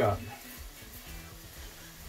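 Faint sizzle and soft stirring as raw arborio rice is toasted in a frying pan with sautéed tomato and onion, turned with a silicone spatula. Quiet background music runs underneath.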